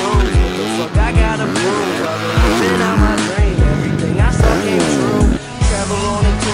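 Dirt bike engine revving up and down, rising and falling in pitch, over a hip-hop backing track with a steady kick drum.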